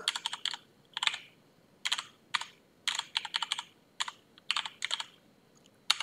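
Computer keyboard typing: short runs of keystrokes separated by brief pauses.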